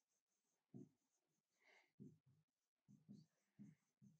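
Very faint pen strokes writing on a board: short separate scratches and taps as formulas are written, close to silence.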